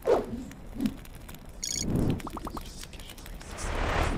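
Sound effects of an animated outro: a hit at the start, a brief bright chime a little under two seconds in, four quick ticks just after, and a swelling whoosh near the end.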